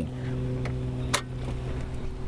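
Two sharp clicks about half a second apart, from toggle switches being flipped on the trike's instrument panel to power up the avionics, over a steady low hum.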